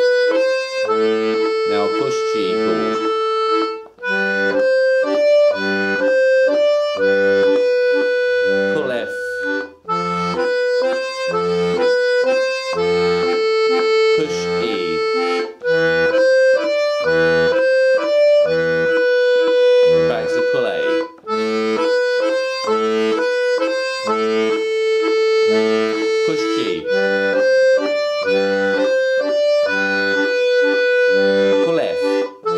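Two-row melodeon (diatonic button accordion) playing a repeating exercise phrase: right-hand melody notes changing on push and pull over low bass notes, the phrase coming round about every six seconds.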